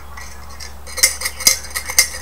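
A lidded glass jar clinking as it is handled, with about four or five sharp, briefly ringing clinks in the second half.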